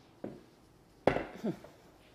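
A dress form (tailor's mannequin) being moved and set down, with one sharp thump about a second in and a few faint knocks and rustles around it.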